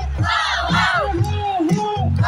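A large crowd cheering over loud amplified music with a steady bass.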